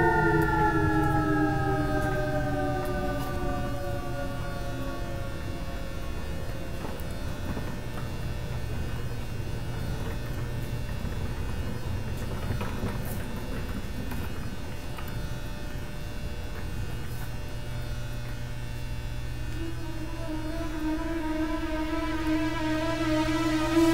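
Eerie horror-film score: several held tones slide slowly downward and fade over the first few seconds, leaving a low steady drone. A new set of held tones swells in near the end.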